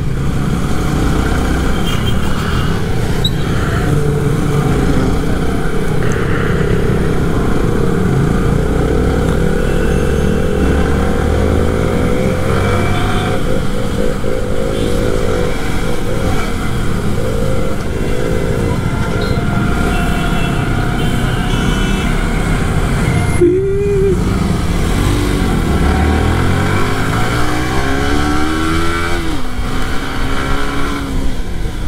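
Yamaha R15 V3's 155 cc single-cylinder engine heard from the rider's seat, accelerating through the gears, its note rising and falling with the throttle. Wind rushes over the microphone the whole time.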